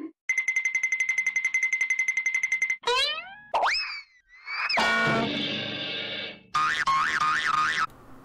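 A string of cartoon-style electronic sound effects. First a rapid pulsing beep for about two and a half seconds, then a rising boing and swooping whistles, then a buzzy chord, and near the end a tone warbling about four times a second.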